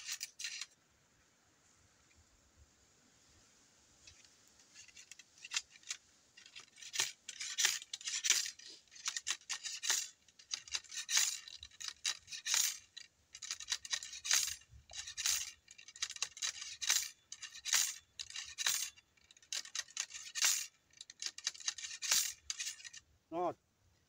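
Ramrod being worked up and down the barrel of a muzzleloading shotgun, seating the wad over the powder charge. It makes a long series of short scraping knocks, roughly one to two a second, starting faintly a few seconds in.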